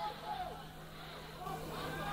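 Faint background voices, indistinct, over a steady low hum during a pause in the announcer's commentary.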